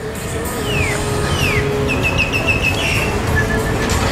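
Street ambience: a steady low rumble of traffic, with high whistled notes over it, two falling whistles and then a quick run of short chirps.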